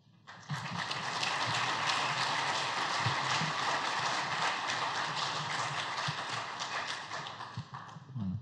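Audience applauding, dense clapping that starts just after the opening and dies away near the end.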